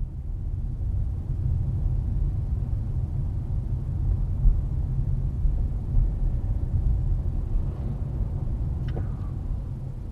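Steady low road rumble of a moving car, heard from inside the cabin as a dashcam picks it up, with a brief click about nine seconds in.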